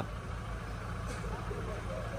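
Vehicle engines running at low revs, a steady low hum under a faint outdoor background.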